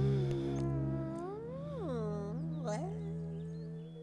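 A woman's long, wavering wail whose pitch rises and dips twice in the middle before holding steady, over a sustained low drone of background music.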